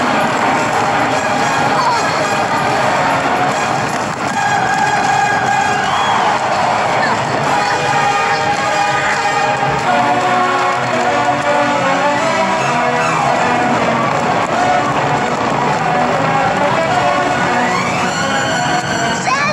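Dramatic orchestral film score with choir, loud and unbroken, layered over the dense rumble of a stampeding wildebeest herd.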